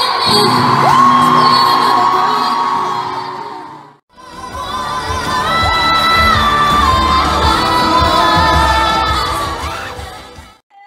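Women's pop vocals sung live in an arena, recorded from the audience with the crowd audible. A long held, sliding note fades out about four seconds in. After a short gap, a second performance follows: several voices holding harmonised notes that step down in pitch, over deep bass.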